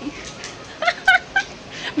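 A woman giggling: three short, high-pitched laughs about a quarter second apart.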